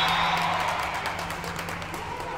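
Players and spectators cheering and clapping in a sports hall as a volleyball point is won, with a short referee's whistle blast ending right at the start.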